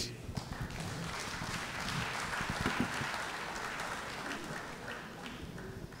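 Audience applause that builds, peaks in the middle and dies away toward the end.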